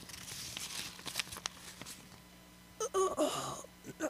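Faint hiss and a low steady hum, with a man's brief wordless vocal sound about three seconds in.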